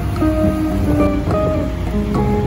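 Background music: a melody of plucked acoustic guitar notes, each fading after it is struck, over a steady low rumble.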